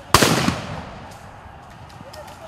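A single loud gunshot just after the start, with a short echoing tail that fades within about half a second. It is police firing during a crackdown on a crowd.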